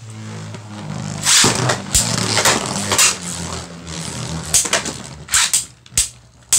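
Two Beyblade Burst spinning tops, Cosmo Dragon and Bushin Ashura, running in a plastic stadium: a steady low whirring hum broken by repeated sharp clacks as the tops hit each other and the stadium wall.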